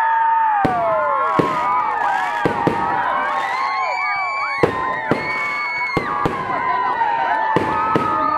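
Fireworks display: about nine sharp bangs of shells bursting overhead, spaced irregularly, over the continuous calls and shouts of a crowd of spectators.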